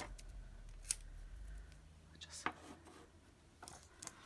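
A few faint, sharp clicks and taps over quiet room tone: an orange-handled craft knife and sticker sheets being picked up and handled on a tabletop. There are three clicks, about one second in, about two and a half seconds in and near the end.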